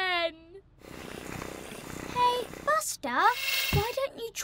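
Cartoon soundtrack: a short wordless whine from a character at the start, then a swelling whoosh-like noise with a brief steady tone in it. Near the end come more wordless character voice sounds over a hiss.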